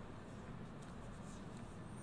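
Faint, steady room tone of a large hall picked up by the lectern microphones, with a low hiss and no distinct events.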